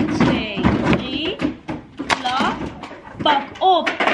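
Hand claps and palms slapping on tables in a call-and-response rhythm routine, with voices over them.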